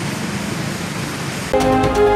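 Steady rushing noise of traffic driving through a flooded street, cut off suddenly about one and a half seconds in by loud news-bulletin theme music with sustained synth notes and sharp hits.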